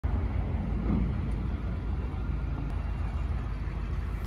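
Ford F-250 pickup truck's engine running with a steady low rumble as the truck rolls slowly forward.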